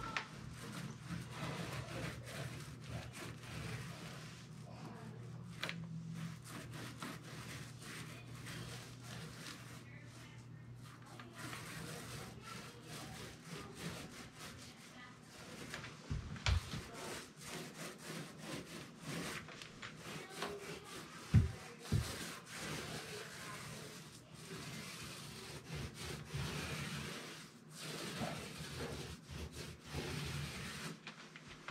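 Six-inch paint roller with a quarter-inch nap rolling wet paint over the smooth face of a door: a steady rubbing that rises and falls with the strokes. A few short knocks come in the second half, the loudest about two-thirds of the way in.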